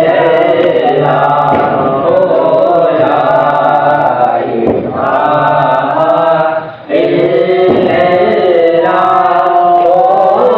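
A man and boys chanting a devotional recitation together in long drawn-out notes, pausing for breath about seven seconds in.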